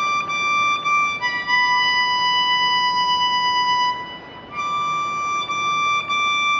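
Harmonica played in long held single notes, blues-style: one note, then a slightly lower note held for about three seconds, a short break just after four seconds, then the higher note again.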